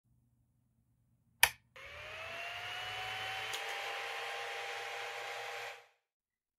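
A single sharp click, then a motor-like whir that rises in pitch as it spins up, levels off and runs steadily for about four seconds before stopping: an intro sound effect.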